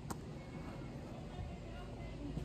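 Wind buffeting the microphone in a steady low rumble, with a single sharp tap just after the start.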